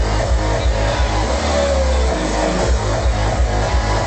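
Drum and bass played loud over a club sound system, with a fast kick-and-snare beat and heavy bass. A little over a second in, the drums drop out briefly, leaving a held sub-bass note and a short falling synth tone, before the beat comes back in.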